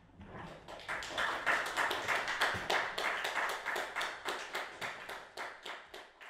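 Applause from a small group of people, clearly separate claps that build about a second in and thin out near the end.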